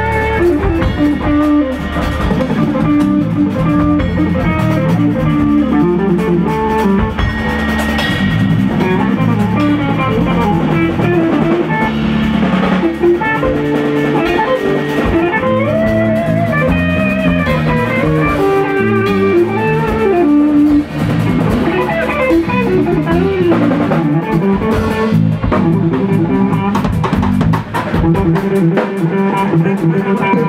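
Live instrumental band: an electric guitar plays a lead line with bent, gliding notes over a drum kit and a low bass part.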